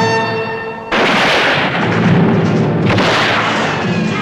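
Two loud explosive blasts, about a second and three seconds in, each dying away in a long noisy tail, laid over orchestral film music.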